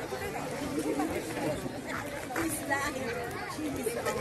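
Indistinct chatter of several people talking at once, no single voice clear.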